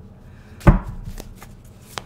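A tarot card slapped down onto a table: one sharp thump about two-thirds of a second in, followed by a few lighter card clicks.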